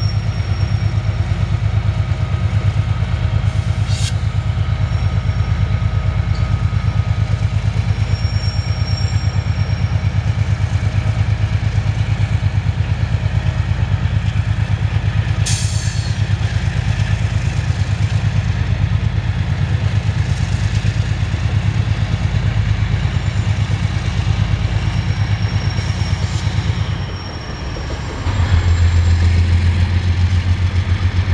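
Diesel freight locomotive running under load as it pulls a cut of freight cars through a yard, a steady, heavy, pulsing engine drone with a few sharp clanks along the way. The engine sound dips briefly near the end, then comes back louder.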